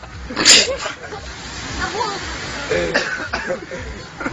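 People talking, with one short, loud breathy vocal burst about half a second in.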